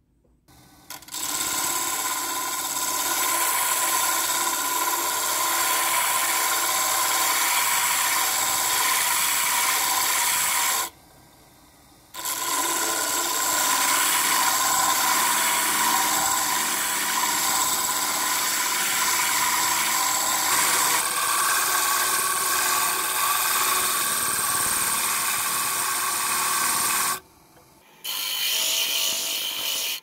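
A lathe-mounted sanding disc spinning, with a segmented wood-and-silver pencil blank pressed against its abrasive face: a steady whirring rasp of wood being sanded flat. It breaks off abruptly twice, for about a second each time.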